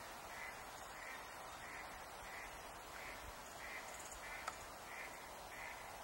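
An animal calling over and over in short, evenly spaced notes, about three every two seconds, with a single sharp snap about four and a half seconds in.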